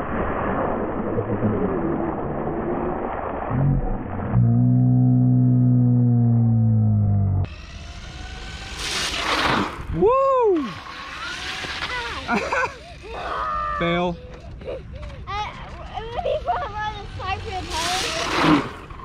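RC monster truck splashing through a shallow puddle on concrete, first in slowed-down slow-motion audio: a low, muffled rush of water, then a loud, deep, drawn-out hum for about three seconds. After that the sound returns to normal speed, with water spray and children's shouts and voices.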